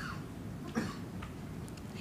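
Pause in a lecture: low room tone in a hall, with one short, faint sound a little under a second in.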